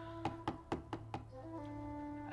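Five knocks on a wooden door, about four a second, over soft background music with long held notes.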